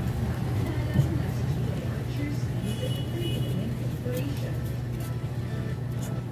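A steady low hum of a running engine in the background, with a few faint small knocks over it.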